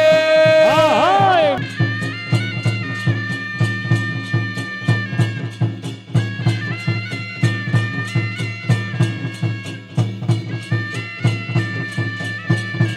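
Traditional Danda Nacha folk music: a double-reed shawm playing a wavering melody with sliding, bending notes, joined about a second and a half in by steady drum beats at roughly three a second.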